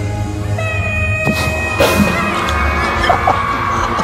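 Live concert recording of a male pop singer holding a long, high sustained note over band backing.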